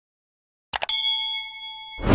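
Subscribe-button animation sound effects: a couple of quick mouse clicks a little under a second in, then a notification-bell ding that rings on and fades slowly.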